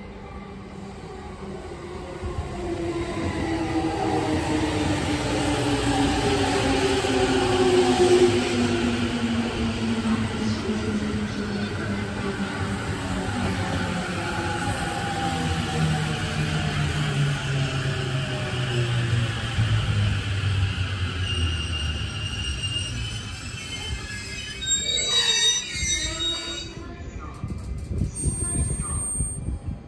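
Musashino Line electric commuter train pulling in and braking to a stop. The motors' whine falls steadily in pitch as it slows, and high brake squeals come in near the end as it halts.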